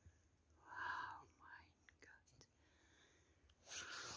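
Faint breathy whispers or breaths from a person, with no voice pitch: one soft burst about a second in and a broader one near the end, with a few faint light clicks between them.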